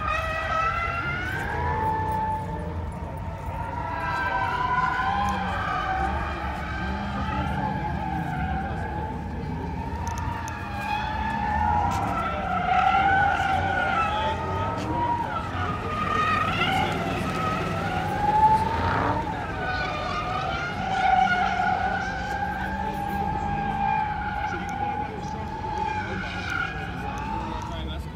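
Vehicle noise: a sustained, wavering high squeal over a low engine rumble, varying in pitch.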